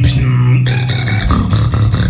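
Human beatboxing: a steady hummed bass line under sharp mouth-made percussion hits.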